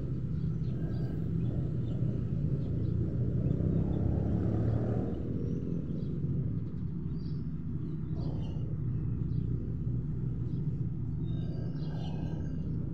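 Steady low outdoor rumble that swells briefly about four to five seconds in, with a few faint high chirps later on.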